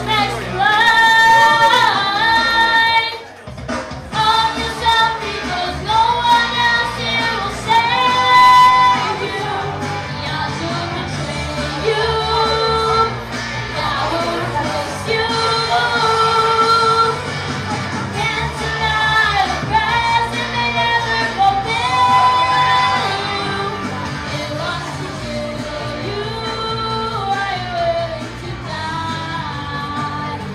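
A boy singing a pop song into a handheld microphone over backing music, amplified in a hall, with a brief break in the music about three seconds in.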